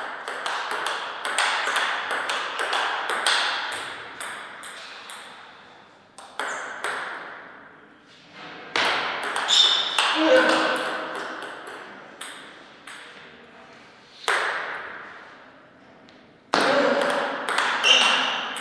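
Table tennis ball clicking off paddles and the table in several short rallies, each strike ringing on in the hall. A player's short shout comes about ten seconds in as a point is won.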